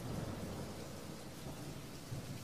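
Rain-and-thunder ambience: a steady hiss like rain with a low thunder rumble that swells in sharply at the start.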